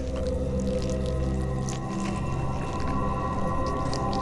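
Suspense background score: a sustained, eerie drone of several held tones over a deep rumble, with faint scattered ticks above it.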